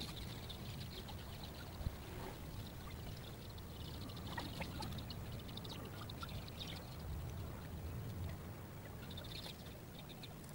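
Outdoor ambience: a low, steady rumble with scattered high chirps of birds, and one sharp click about two seconds in.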